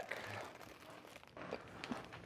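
Faint rustling and shuffling of a person turning around in a hoodie, with a few light ticks.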